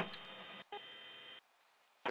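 Apache helicopter cockpit radio keyed open with no voice: a click, then a steady hiss with a hum running through it, breaking briefly after about half a second and cutting off about a second and a half in.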